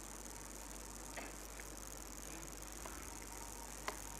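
Faint, steady high-pitched chirring of insects in the background, with a couple of soft clicks.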